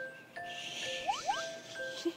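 Soft, tinkling background music: a bell-like melody of held notes, with a high shimmering sparkle and two quick rising glides about a second in.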